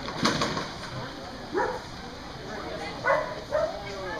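Dog barking: three short barks, the last two close together, after a loud sharp noise just after the start.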